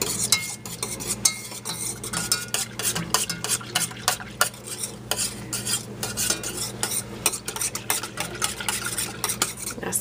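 Wire whisk beating cream and milk in a stainless steel saucepan: quick, irregular clinks and scrapes of the wires against the pan's sides and bottom, with the liquid sloshing, as cinnamon is whisked in.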